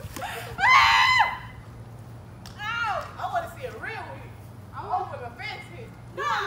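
Girls shrieking and shouting excitedly during play: a loud, high-pitched shriek from about half a second in to just over a second is the loudest sound, followed by shorter shouts around three and five seconds in.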